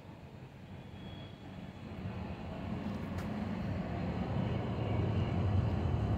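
A motor vehicle running, a low rumble that grows steadily louder through the second half, with one faint click in the middle.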